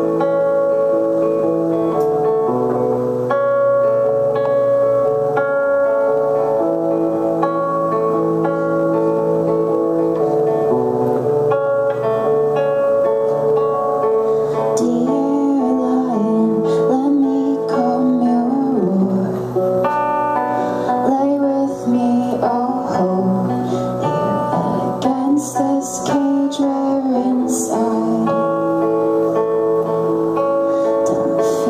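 Electric guitar playing slow, ringing chords as a song's intro, then accompanying a woman's singing voice that comes in about halfway through.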